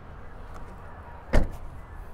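The rear liftgate of a 2019 Toyota 4Runner being pulled down and shutting with a single slam about a second and a half in.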